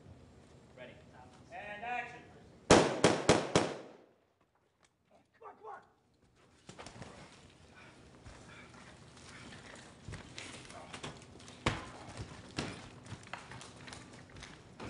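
A quick burst of about five loud, sharp bangs near three seconds in. From about halfway through come continual crunching, clattering steps and knocks over broken wooden debris.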